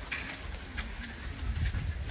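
Low rumble of wind on the microphone, with light scattered ticks.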